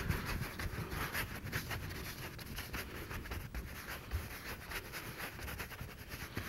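A large bristle brush scrubbing oil paint onto canvas in short, quick strokes: faint, irregular scratchy swishes.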